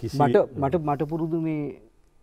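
A man talking in Sinhala, falling silent shortly before the end.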